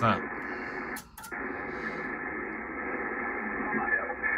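Kenwood TS-990 transceiver's speaker playing 40-metre single-sideband reception as it is tuned up the band: a steady, band-limited hiss with faint, garbled voices of stations. The audio cuts out briefly with two clicks about a second in.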